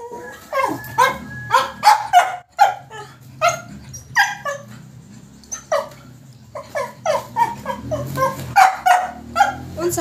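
A medium-small tan dog barking in a rapid string of short, high barks and yips, about two a second with a brief pause near the middle, each call dropping in pitch. The dog is play-bowing as it barks, so this is excited, playful barking.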